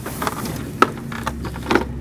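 Clacks and knocks of a small step-through motorcycle being handled and turned by hand with its engine off, a sharp clack a little before the middle and another near the end.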